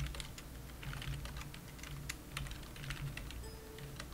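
Computer keyboard typing: quick, irregular key clicks as a command is typed.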